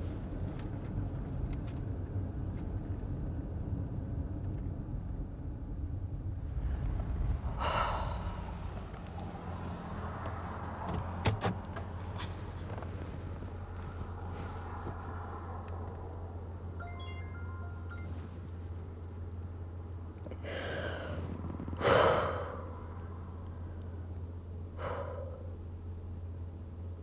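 A woman breathing shakily and crying, with several sighs and gasping breaths, the loudest about 22 seconds in, over a steady low hum in a car cabin.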